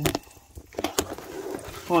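A few sharp knocks and light clatters from a handheld phone being handled and moved, with a voice starting near the end.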